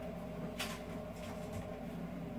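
A steady low mechanical hum, with a faint soft rustle about half a second in.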